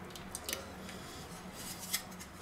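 Faint rubbing from fingers crumbling yeast over a stainless steel mixing bowl of water, with a few light clicks.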